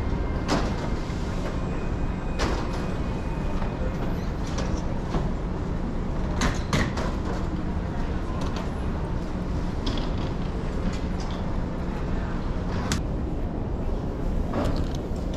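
Airport baggage carousel running: a steady low rumble with a faint hum, and scattered clacks and knocks from the moving metal slats and the suitcases riding on them.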